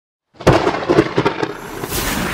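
Logo-reveal sound effect: after a brief silence, a string of about six heavy hits over a second and a half, then a swell of hiss near the end.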